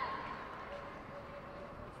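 Faint open-air stadium ambience with distant, indistinct voices from the pitch, with a brief louder call at the very start.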